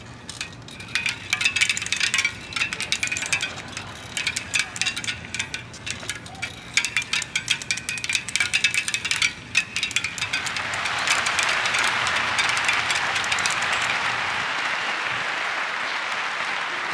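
A quick, irregular run of clicks, knocks and chime-like clinks from objects being handled close to microphones, then from about ten seconds in a steady audience applause.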